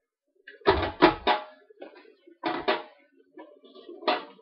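Marinated chops being laid into a paper-lined plastic container, with knocks and thuds: three quick ones about a second in, then two more past halfway, with light rustling between.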